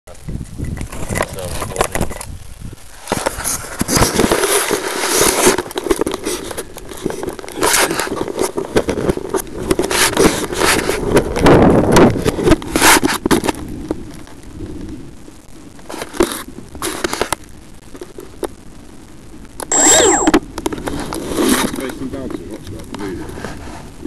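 Close handling noise on a foam RC plane's onboard camera microphone: fingers rubbing, scraping and tapping on the camera and airframe in irregular crackling bursts. A louder burst with a thin high tone comes about two seconds before the end.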